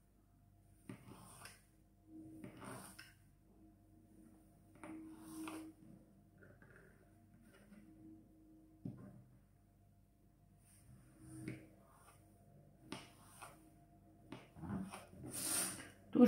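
A small kitchen knife cutting through a boiled sausage and knocking on a plastic cutting board: faint, irregular cuts about every one to two seconds.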